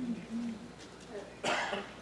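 A single short cough about one and a half seconds in, after faint voice sounds.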